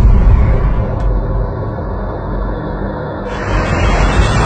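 A deep, steady rumbling drone on a dramatic film soundtrack. It opens with a sudden low hit, and a hiss swells in near the end.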